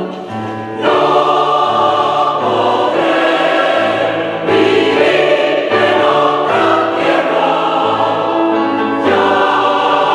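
Mixed choir singing a Spanish habanera in slow sustained chords, with the men's low voices holding long notes underneath. The singing swells louder about a second in and again near the middle.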